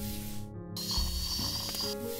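Two bursts of hissing spray from a dental spray nozzle, the second one longer and with a thin high whistle, over soft background music.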